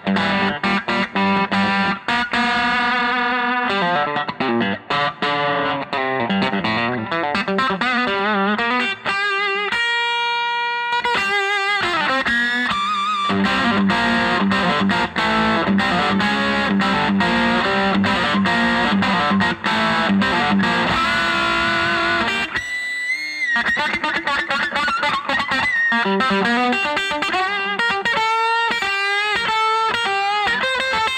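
Fender Custom Shop 1968 Stratocaster electric guitar played through an overdriven amp: fast single-note lead lines with string bends and vibrato. There is a note held about ten seconds in, and a brief break followed by a wavering bent note a little past two-thirds of the way through.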